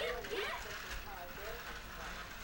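Faint young children's voices babbling and calling in a room, with no other clear sound.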